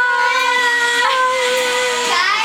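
A girl's voice holding one long, steady sung note for about two seconds.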